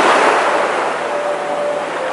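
A small sea wave breaking and washing over the camera: a sudden rush of churning water that settles into a steady wash.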